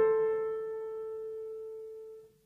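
Solo piano: a single note struck just before, ringing on and slowly dying away.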